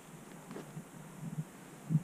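A few faint rustles and soft handling sounds from a plastic bait bag, over a quiet steady outdoor hiss.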